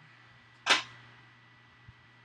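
A single sharp, loud bang or snap a little under a second in, dying away quickly, followed by a faint click near the end, over a steady low hum.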